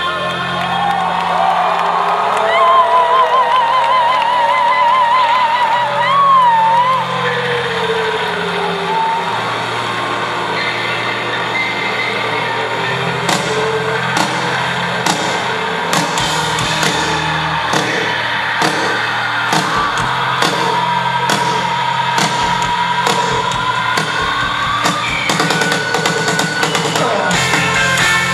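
Live rock band playing through a festival sound system, heard from within the crowd. Sustained bass notes carry a wavering lead melody line early on, and drum hits join about halfway through.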